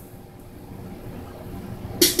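Quiet room tone: a steady low hum and faint hiss, with no distinct event.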